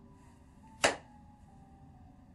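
A man says "to her" quietly and briefly about a second in, over faint steady background tones at a low level.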